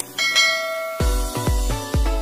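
A bright bell chime sound effect from a subscribe-and-notification-bell animation rings just after the start and fades away. About a second in, electronic dance music with a heavy bass beat, about three beats a second, starts up.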